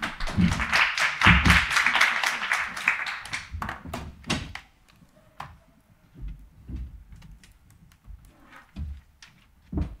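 A short round of audience applause that thins out and stops after about four and a half seconds, followed by a few soft knocks and a thump near the end.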